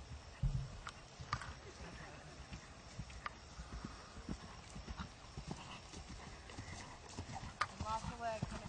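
Horse's hooves on grass as it is ridden, a series of irregular thuds and clicks, with a heavier thump about half a second in.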